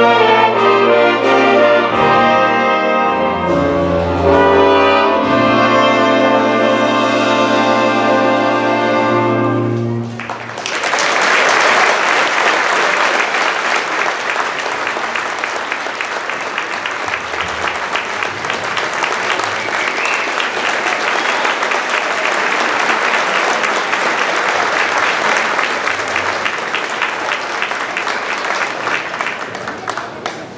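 A school band with brass plays the final sustained chords of a tune, ending about ten seconds in. Audience applause follows at once and slowly dies down near the end.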